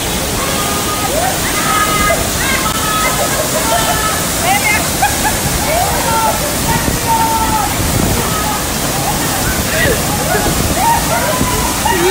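Waterfall pouring over a rock face into a pool: a steady rush of falling water, with people's voices talking underneath it.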